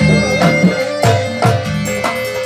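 Live East Javanese gamelan ensemble playing gandrung dance music: struck percussion accents about twice a second under a sustained melody line.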